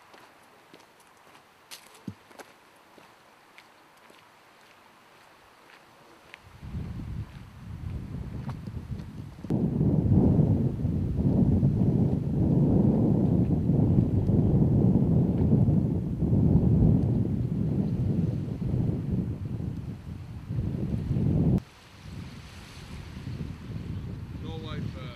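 Wind buffeting the microphone in gusts. It starts about six seconds in, grows loud for about twelve seconds and then cuts off abruptly near the end. Before it there is only quiet background with a few faint clicks.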